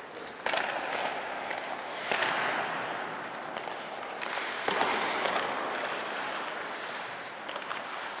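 Ice hockey skates scraping and carving across the ice, a steady hiss that swells and eases as players move, with sharp knocks of sticks on the puck about half a second in and again near the five-second mark.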